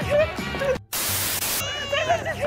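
A burst of static hiss, under a second long, that cuts in suddenly about a second in, just after a brief dropout. Voices are heard just before it.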